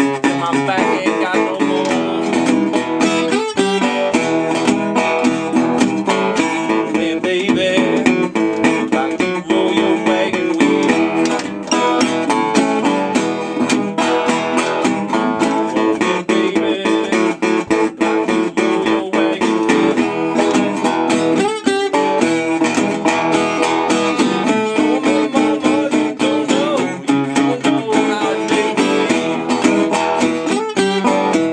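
Metal-bodied resonator guitar played fingerstyle in a steady, unbroken Hill Country blues groove.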